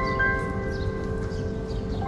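Soft background music with held, ringing bell-like notes, over a steady low rumble of outdoor ambient noise that comes in with the new shot. A few faint, brief high chirps sit above it.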